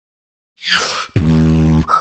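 Beatboxer's vocal sounds starting about half a second in: a short hissing burst, then a low, steady bass tone held for under a second.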